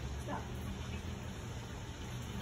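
Quiet, steady outdoor background: a faint even hiss with a low steady hum underneath, and no distinct events.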